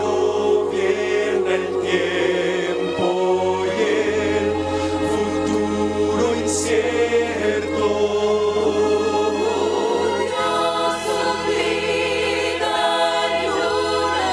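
Mixed choir of men and women singing in harmony through microphones, over long held low notes.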